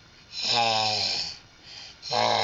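One deep, growling vocal sound about a second long, much lower-pitched than a baby's voice, followed by a faint short sound near the end.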